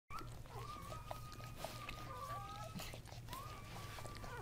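Newborn Kuvasz puppy whining in two long, thin, high-pitched cries, the second starting about three seconds in, while nursing at the mother, with small wet clicks of suckling in between.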